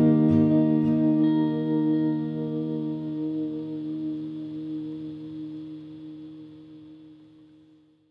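Acoustic guitar's final chord ringing out and slowly fading away over several seconds, dying out near the end.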